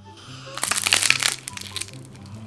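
Dry white clay crust cracking and crumbling as a clay ball is pulled apart by hand over soft red clay: a dense run of crackling snaps starting about half a second in and lasting about a second, then a few scattered crackles.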